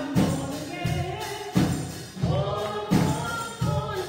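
Live gospel song: a woman's voice leads the singing over a drum kit keeping a steady beat.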